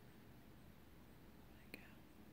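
Near silence: faint room tone, with one short, sharp click near the end.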